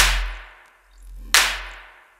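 Electronic drumstep music at 175 BPM: a hard drum hit with a long fading tail lands twice, about 1.4 s apart, over a deep sub-bass that swells up and dies away between the hits.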